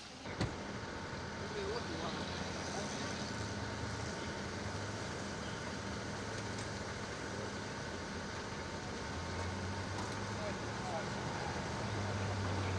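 A car engine running amid steady street traffic noise, with a low hum that swells and fades, and a single sharp knock about half a second in.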